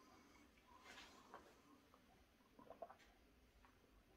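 Near silence: a man quietly sipping beer from a glass, with a few faint soft sounds about a second in and a couple of small ticks near three seconds.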